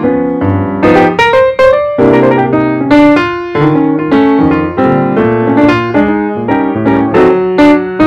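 Background piano music: a steady flow of struck notes and chords.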